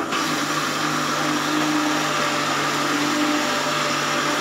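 Electric mixer grinder running steadily at speed, its stainless-steel jar grinding chopped vegetables and water into a pulp.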